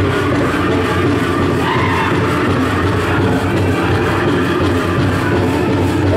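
Pow wow drum group singing over a steady drumbeat for a jingle dress song, with the metal cones on the dancers' dresses jingling.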